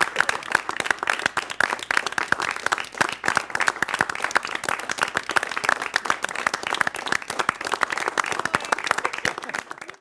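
A group of about twenty people clapping, a dense, irregular patter of many hands that keeps going and stops abruptly right at the end.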